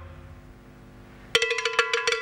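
The end of a song dies away. About a second and a half in, a cowbell starts ringing, struck again and again in an uneven rhythm, each stroke sharp with a ringing tone.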